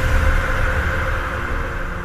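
Tail of a logo sting: a sustained low rumble with faint held tones, slowly fading out after the impact that brought up the logo.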